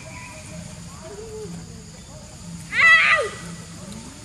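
A macaque gives one short, loud, high-pitched call about three seconds in, its pitch rising at the start and then held, after a fainter, lower call about a second in.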